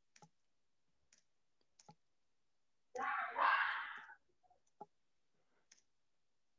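Faint computer clicks, about five of them spread out, as slides are paged back through. A breathy rush of noise lasts about a second in the middle.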